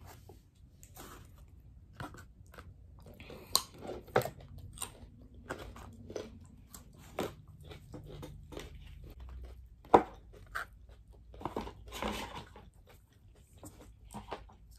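Close-up chewing and biting into fried chicken wings: irregular crunches and sharp clicks, the sharpest about four seconds in and about ten seconds in.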